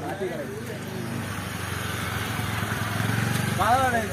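A motorcycle engine running close by, a steady drone that grows a little louder towards the end, with men's voices over it at the start and near the end.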